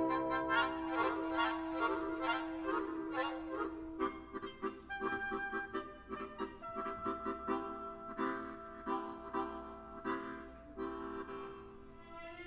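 Chromatic harmonica playing with a symphony orchestra: long held notes against quick, short, repeated chords, growing quieter near the end.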